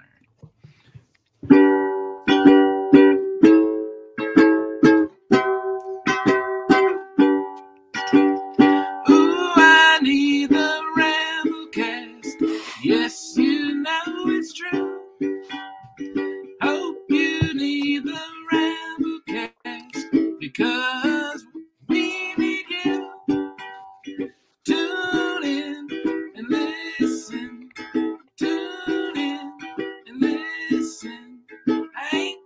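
A man singing a song with his own rewritten lyrics over plucked-string accompaniment in a small room. It starts about one and a half seconds in and runs on as steady, rhythmic strumming and picking.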